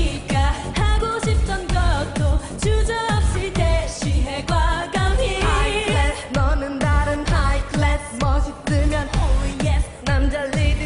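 K-pop dance song with female singing over a heavy electronic beat, a deep kick drum about twice a second.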